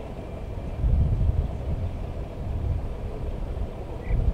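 Low, uneven rumble of a vehicle engine running at idle, swelling about a second in.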